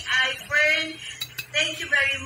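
A woman speaking, with two short clicks in a brief pause a little past a second in.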